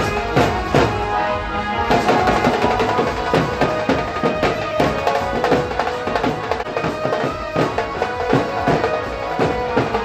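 Band baja wedding band playing traditional processional music: continuous drumming under a melody on wind instruments.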